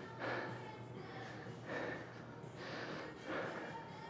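A man breathing hard after exertion, several heavy breaths about a second apart, winded from a round of kettlebell and dumbbell exercises.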